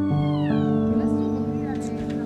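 Background music with sustained notes, and over it a puppy's high whine that falls in pitch over about the first second.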